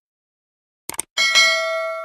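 Subscribe-button animation sound effect: a quick double mouse click just before a second in, then a notification bell ding that rings on and slowly fades.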